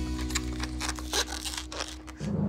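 Latex modelling balloon being twisted into a balloon animal: a run of short, irregular rubbery squeaks and crinkles, over a low sustained music bed.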